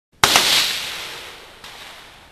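A single shot from a 300 Blackout AR pistol with a 10.5-inch barrel firing subsonic ammunition: a sharp report, echoed right after, then a long decaying tail. A fainter knock follows about a second and a half in.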